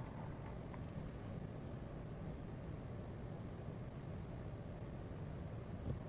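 Steady low hum of laboratory ventilation, as from a fume hood's exhaust fan, with no distinct events.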